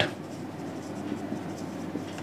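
Marker writing on a whiteboard: faint scratching strokes.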